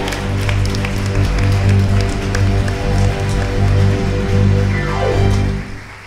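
Live band music from a headless electric guitar with keyboard, with strong sustained low notes. About five seconds in, a note slides downward, and the music stops just before the end.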